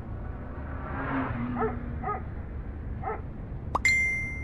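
Smartphone message notification chime near the end: a sudden click and then a short held high tone. Before it, three short faint calls sound over a low steady hum.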